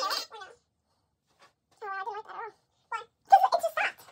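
Music stops abruptly just after the start. After a short silence come two brief, high-pitched wavering vocal sounds, the second louder and rising in pitch near the end.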